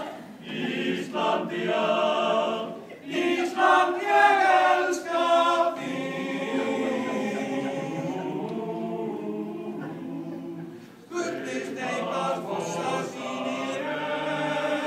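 Men's choir singing unaccompanied: short, separate phrases at first, then a long held chord. Near the end the sound dips briefly and the singing starts up again.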